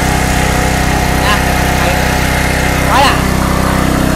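Takata single-cylinder four-stroke petrol engine with a gear-reduction angled output shaft, running steadily at idle.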